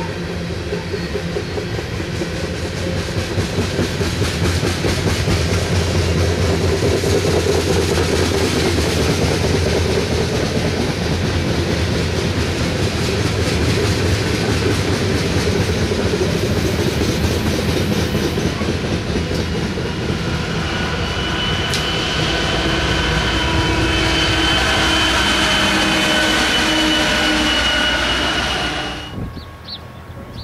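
Loaded coal hopper cars of a freight train rolling past close by, a steady heavy rumble and rhythmic wheel clatter. In the second half a steady high whine rides over the rumble, and the sound cuts off suddenly just before the end.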